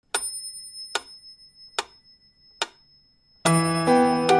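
Four sharp, clock-like ticks a little under a second apart, each fading quickly, over faint steady high ringing tones. Background music comes in near the end.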